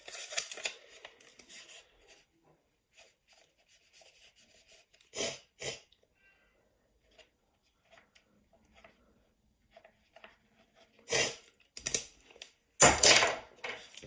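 Pen writing on a small slip of paper: faint scratching and rubbing strokes, with a couple of louder strokes about five seconds in. Near the end come several loud rustles as the paper is handled.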